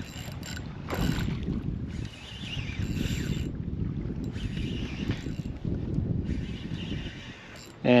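Fishing reel being cranked in several short spells, winding in a hooked fish, over a steady low rumble of wind on the microphone.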